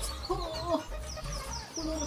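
Chickens clucking in short, pitched calls several times over, with thin, higher bird chirps above them.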